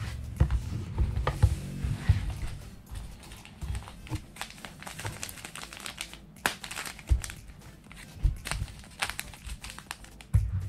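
Plastic bottles and a plastic fish-feed packet handled on a tabletop: irregular taps, clicks and knocks, with some plastic crinkling.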